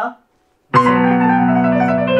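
Korg arranger keyboard sounding one sustained chord, starting just under a second in and held steady.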